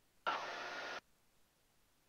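Faint, even hiss of cockpit noise from the Piper M350's engine and airflow, picked up by the headset intercom microphone. It comes in just after the start, then cuts off abruptly to silence about a second in.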